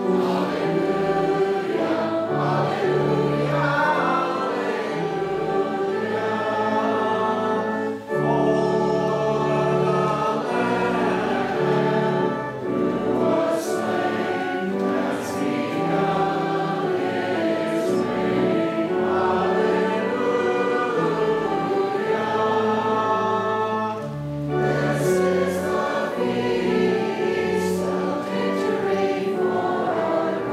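A group of voices singing a hymn together over sustained low accompanying notes, with short breaths between phrases.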